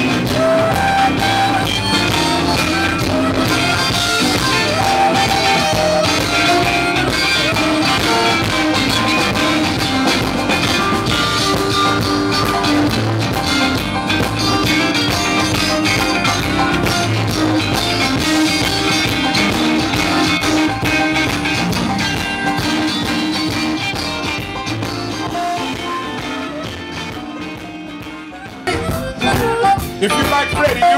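Live electric blues band playing an instrumental stretch: electric guitar lead over bass and drums. The music fades down over the last few seconds, then comes back in abruptly just before the end.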